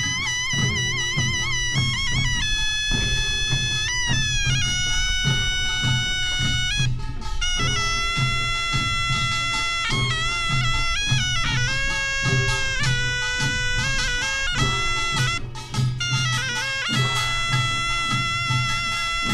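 Korean folk band music: a reedy shawm (taepyeongso) plays a sustained, wavering melody in held notes over a steady beat of barrel drums (buk).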